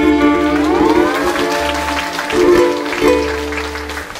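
A Hawaiian band of ukuleles, guitars, bass and steel guitar playing the closing bars of a song: over a held chord a slide glides upward early on, then a few plucked notes and bass notes end it. Audience applause starts to come in under the last notes.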